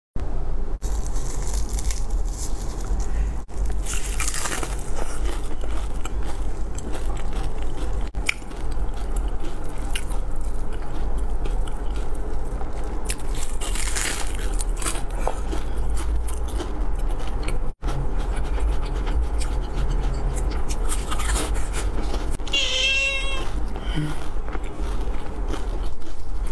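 Close-miked crunching bites and chewing of crispy fried food over a steady low hum, with the loudest crunches about four seconds in and again around fourteen seconds. Near the end comes a short wavering high-pitched vocal sound.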